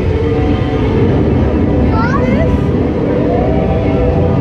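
Ambience of a boat dark ride: a loud, steady low rumble with voices and the ride's sung soundtrack playing underneath. A short burst of rising, chirp-like glides comes about two seconds in.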